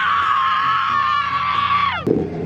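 Several teenage girls screaming together in one long, high-pitched scream that breaks off suddenly at the end.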